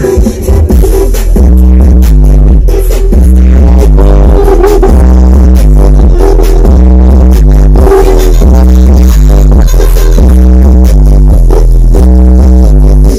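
DJ dance music played very loud through a large stacked sound-system rig, with a heavy bass line stepping between notes about once a second under a repeating melody.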